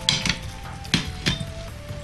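Hands crumbling thawed tofu in a stainless steel bowl, with three sharp metallic clinks as fingers strike the bowl: one at the start, one about a second in and one shortly after.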